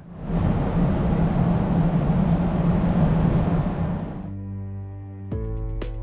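Electric high-speed train at the platform: a steady rushing noise with a low hum, fading out after about four seconds. Background music with held notes comes in, then plucked strings near the end.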